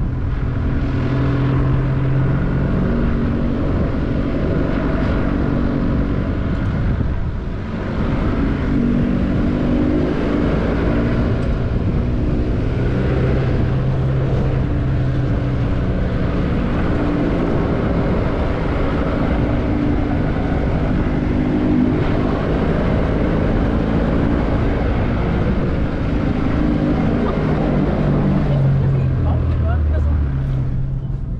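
Four-wheel-drive vehicle being driven on a soft sand track: the engine runs with its revs changing up and down, over a dense rumble of tyre and wind noise, with a short lull about seven seconds in and the engine note dropping near the end.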